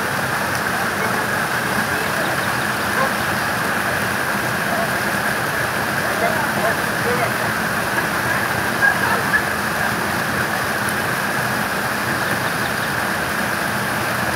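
Steady rush of flowing water, with faint voices now and then.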